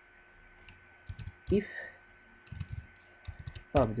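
Computer keyboard typing: a short burst of key clicks about a second in, then a longer run of keystrokes from about two and a half seconds in.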